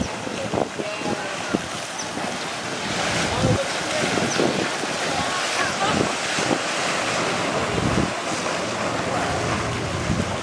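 Water splashing and churning as African elephants wade and run through a pool, getting louder about three seconds in as they charge through the water.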